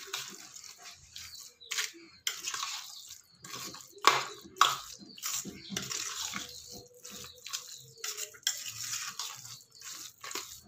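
A hand mixing cooked rice with thick curd in a stainless steel bowl: irregular wet, sticky strokes, with two louder ones about four seconds in.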